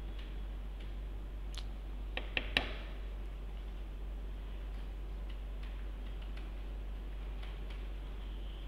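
Steady low electrical hum with scattered faint clicks, and three sharper clicks in quick succession about two seconds in.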